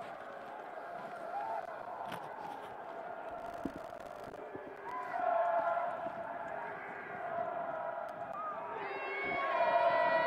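Faint, indistinct voices calling out across an open stadium over a steady outdoor background hiss; the calls are a little louder about five seconds in and again near the end.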